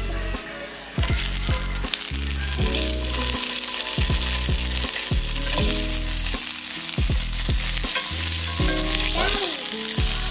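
Plant-based sausages sizzling and frying in oil in a Lodge cast iron skillet, the sizzle starting loud about a second in and holding steady. Music plays underneath.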